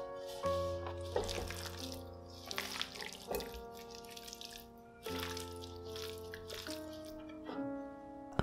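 Soft background music with sustained held notes, under faint wet squelching of marinated beef slices being stirred with a spatula in a glass bowl, heard mostly in the first few seconds.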